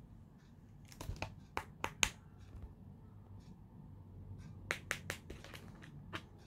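Cracked smartphone screens and phone parts being handled and moved about, giving scattered sharp clicks and taps of glass and plastic: a few about a second in, a couple around two seconds, and a cluster near five seconds.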